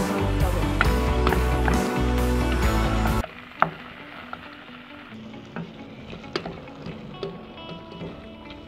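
Background music, the loudest sound, cuts off abruptly about three seconds in. After it, a spoon clicks and knocks against a metal pot as raw chicken pieces are turned in sofrito, over faint sizzling as the chicken starts to sear.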